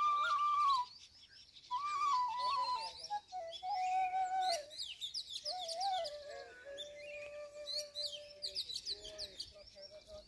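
Bamboo transverse flute in D playing a slow melody of long held notes. A high note breaks off just before a second in, then the tune resumes and steps down to a long low note held through the middle of the stretch. Birds chirp and twitter high above it from about three seconds in.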